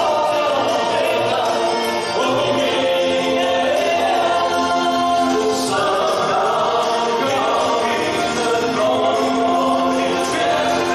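A men's vocal group singing a gospel song in harmony into microphones, heard through the church's PA. The voices hold long chords.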